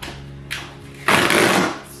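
A cardboard shipping box being ripped open by hand. There is a short scrape about half a second in, then a loud rasping tear lasting under a second, starting about a second in.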